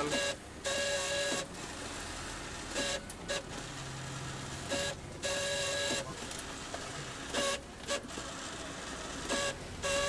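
Canon iR5000 photocopier's automatic document feeder running as it pulls sheets through, with a loud, rough whining noise that comes and goes in stretches of about a second. The noise is the feeder's fault: very noisy, painful to the ears, and about to be repaired.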